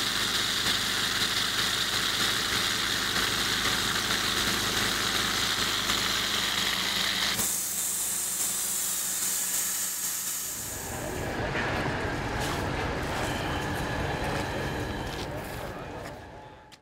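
PyroLance ultra-high-pressure water-and-abrasive lance jetting into a brick wall: a loud, steady hiss of the cutting jet with a steady low hum underneath. From about eleven seconds in the high hiss thins as a lower rushing grows, and the sound fades out at the end.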